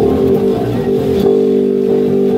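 Electric bass guitar playing a rock bass line along with the song's recording, the music running on without a break.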